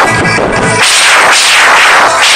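A rock band playing live at full volume, with electric guitars and drums, picked up very loud on a phone's microphone. A hard full-band hit comes a little under a second in.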